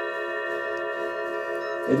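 A struck metal chime ringing out: a steady, shimmering bell tone with many overtones that hangs in the air and is cut off abruptly near the end.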